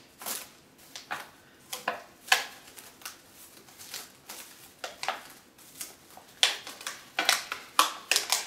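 Cling film crinkling and crackling in irregular bursts as it is stretched and wrapped tight around a thin clear plastic tub.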